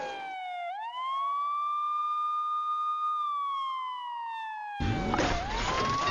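Emergency-vehicle siren on a wail. It dips, rises quickly, holds high for about a second and a half, then slides slowly down and rises again near the end. A low rushing noise underneath stops about a third of a second in and comes back about five seconds in.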